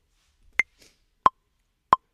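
Metronome count-in clicks from Maschine beat-making software, sounding just before a recording pass: three short even ticks about two-thirds of a second apart, the first one higher-pitched as the accented downbeat.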